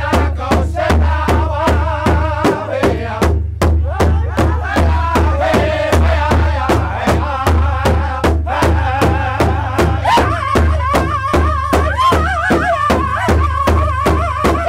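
Powwow drum group singing an intertribal song in unison over one large shared powwow drum, several singers striking it together in a steady beat of about three strokes a second. About ten seconds in the voices jump higher.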